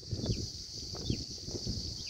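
Insects chirring in a steady high-pitched drone, over a faint, uneven low rumble, with a couple of short high chirps.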